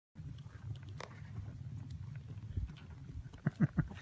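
Two horses walking on a dirt track: soft hoof steps and the low rumble of riding movement, with a few short vocal sounds near the end.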